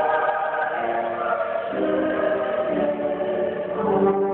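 Mixed choir of men and women singing held chords, the notes moving to new pitches every second or so.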